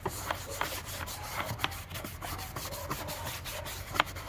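Toothbrush bristles scrubbing a wet, soapy plastic door panel, a scratchy rubbing in quick, irregular back-and-forth strokes.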